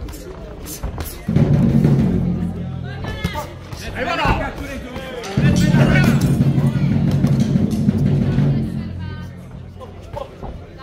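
Loud, steady low drumming in two long stretches, starting about a second in and again about five seconds in, with voices shouting in between.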